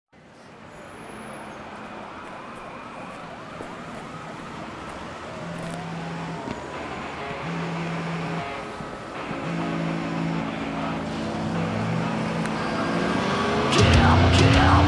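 Night city ambience: a distant siren wailing slowly up and down over a steady haze of traffic noise. From about five seconds in, low held tones come and go beneath it, and the whole grows steadily louder towards the end.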